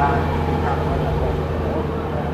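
A car driving slowly past close by, its engine a low steady hum, with voices chattering around it.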